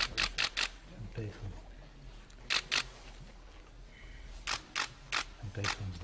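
Still-camera shutters clicking in quick runs: four fast clicks at the start, two more about two and a half seconds in, and a scatter of single clicks in the last second and a half, over low murmured voices.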